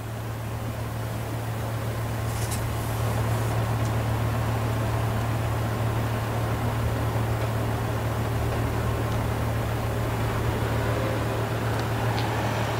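Car engine idling with a steady low hum that grows slightly louder over the first few seconds, as the black Audi A8 limousine waits and then begins to roll forward.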